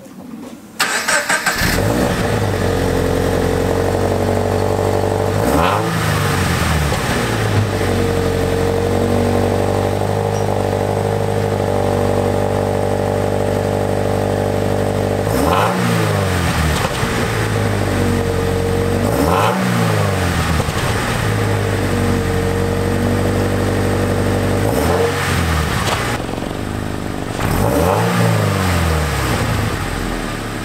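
Toyota GT86's FA20 flat-four engine, fitted with an unequal-length de-cat exhaust manifold, starting about a second in and settling to a steady idle. It is revved in short blips several times.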